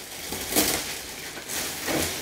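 Clear plastic packaging bag crinkling as a padded coat is handled and pulled about inside it, loudest about half a second in and again near the end.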